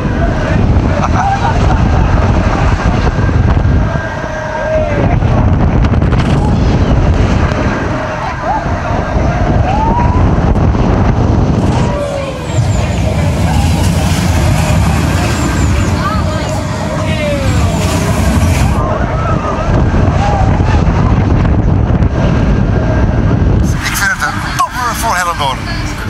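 Loud wind buffeting the microphone and the rumble of an amusement ride in motion, with occasional short shouts from riders. Near the end a man starts talking.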